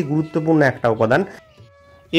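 A man's voice talking for a little over a second, then a short quiet pause with a faint steady tone.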